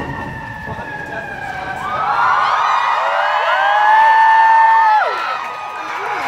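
Emergency vehicle siren on the street: several gliding tones rise about two seconds in, hold high, then drop away about five seconds in.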